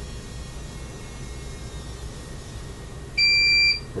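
Surge test generator giving a single high electronic beep, about half a second long, near the end, while it charges for the next surge. A faint low hum runs underneath.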